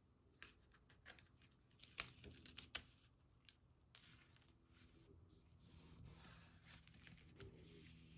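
Faint handling of cardstock: fingers pressing and rubbing paper flat, with a few sharp taps in the first three seconds. In the second half comes a longer rustle as a thin strip of double-sided score-tape liner is peeled away.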